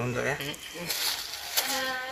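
Speech: a man saying "ya" and talking briefly.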